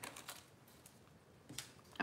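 A few faint, light taps against near silence: fingernails tapping on a smartphone screen.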